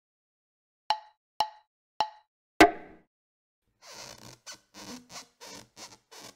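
Cartoon-style pop sound effects: three identical short pops about half a second apart, then a louder, deeper pop. A quick run of short, rustly bursts follows.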